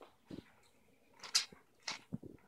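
Pet ferret making three short, breathy sounds, the loudest a little past the middle.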